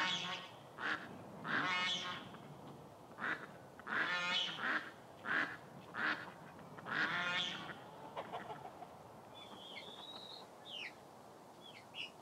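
Domestic waterfowl calling, about nine separate calls over the first seven seconds or so. A few short small-bird chirps follow near the end.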